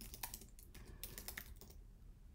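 Computer keyboard being typed on in a run of faint, quick key clicks that stop shortly before the end.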